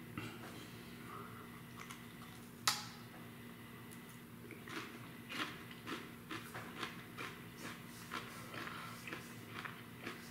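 A person biting into a crisp superhot chili pepper pod and chewing it: one sharp snap about three seconds in, then irregular crunching from about halfway on.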